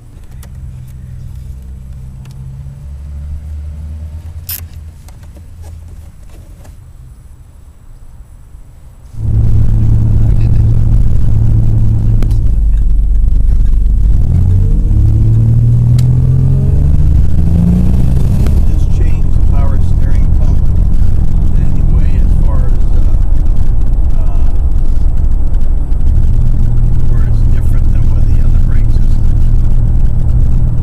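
Turbocharged Buick Regal T-Type V6 heard inside the cabin while driving. A quieter low, steady engine sound becomes suddenly much louder about nine seconds in. The engine then pulls hard, its pitch climbing and then dropping at a gear change before settling into steady running.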